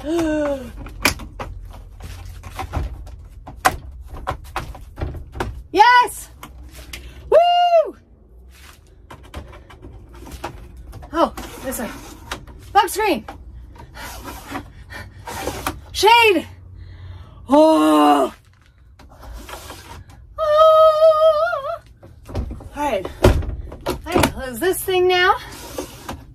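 Plastic clicks and knocks as the inner frame of a Dometic Mini Heki skylight is pushed and worked into place overhead, interrupted by short effortful vocal cries and a held hum.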